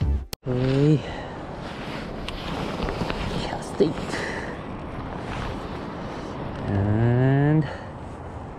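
Steady outdoor wind and water noise at the shore, broken by two short spoken phrases, one about half a second in and one near the end. A single sharp click comes about four seconds in. The tail of electronic music cuts off right at the start.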